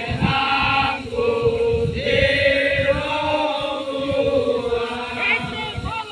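Many voices chanting together in long held notes, the sustained chant strongest from about a second in, over a rough background of crowd noise.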